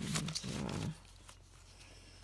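A woman's voice making two short hummed sounds that fall in pitch, like a wordless 'mm-mm', with a light rustle of magazine pages being handled.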